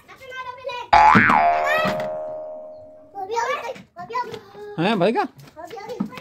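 A cartoon 'boing' sound effect: it starts suddenly about a second in, its pitch springs up and back down, and it rings out as a fading tone over about two seconds. High-pitched, childlike voice sounds follow in the second half.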